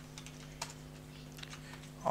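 Faint computer keyboard keystrokes, a few scattered clicks, over a steady low hum.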